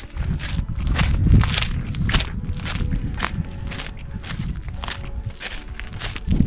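Footsteps on a dirt hiking trail, a steady walking pace of about two steps a second.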